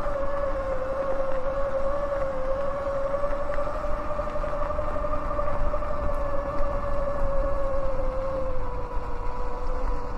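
Sur-Ron X electric dirt bike on the move: its motor and drivetrain give a steady high whine, wavering only slightly in pitch, over a low rumble of tyres on the dirt road and wind.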